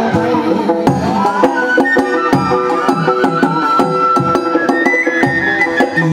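Hát văn ritual music: wooden clappers tick a steady beat under plucked lute notes, with a long, high held melody line that steps up in pitch near the end.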